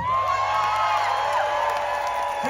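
Concert crowd cheering and whooping as a rock song ends, many voices overlapping in rising and falling calls.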